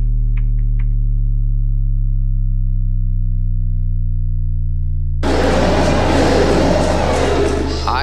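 Electronic track's outro: a held low synth bass chord rings steadily, with a few short clicks in the first second. About five seconds in, a loud wash of noise starts abruptly over the held chord.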